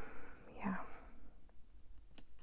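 A woman's soft-spoken "yeah", then quiet with one faint click about one and a half seconds in.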